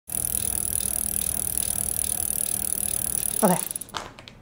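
Steady hiss with a faint low hum, a constant background noise that cuts out suddenly near the end. A woman says "okay" just before it stops.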